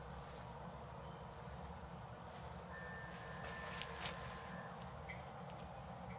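Faint rubbing and a few light clicks of a metal massage stick worked along an oiled bare back, over steady hiss. A thin, steady high tone sounds for about two seconds in the middle.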